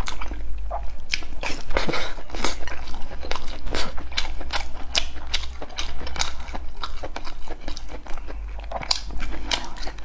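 Close-miked chewing of braised pork knuckle and rice: wet mouth clicks and lip smacks, several a second, over a low steady hum.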